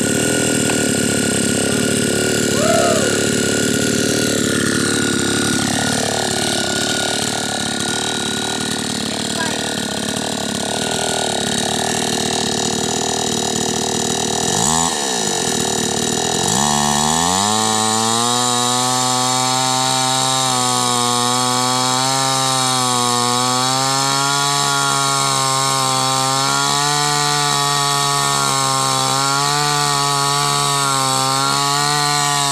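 Petrol chainsaw running loud and continuously while sawing a round slice off the end of a felled log. From about halfway its engine settles into a steady note that wavers slightly as the chain cuts through the wood.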